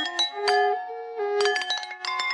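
Jalatarangam: water-tuned porcelain bowls struck with thin sticks, playing a quick run of ringing, clinking notes in a Carnatic melody in raga Kalyani. The strikes pause briefly about a second in while a violin holds and slides between notes beneath them, then the bowl strokes pick up again.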